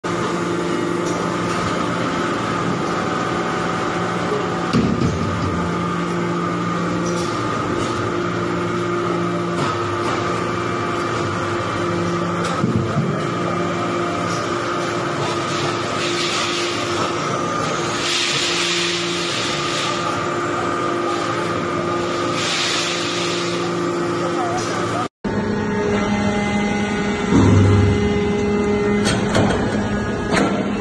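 Hydraulic iron-powder briquetting press running: a steady hum from its hydraulic power unit, with a few brief bursts of higher noise in the middle. About 25 seconds in, the sound changes abruptly to a second press with a different hum.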